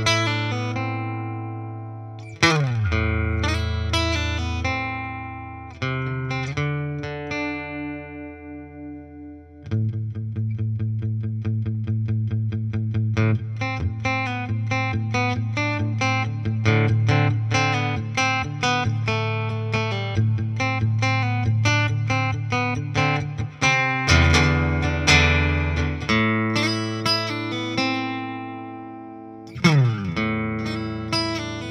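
Fender Acoustasonic Stratocaster on its modelled spruce-and-mahogany dreadnought acoustic voice, played through a Fender Deluxe Reverb guitar amp: a few chords struck and left to ring, then fast, steady strumming from about ten seconds in.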